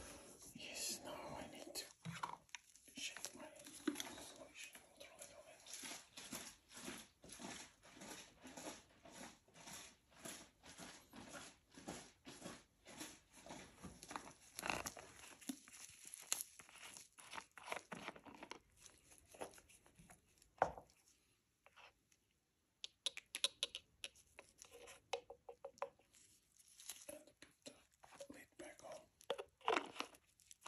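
Close-up crinkling and crackling of thin plastic disposable gloves and packaging being handled, a dense run of small crackles with a brief pause about three-quarters of the way through.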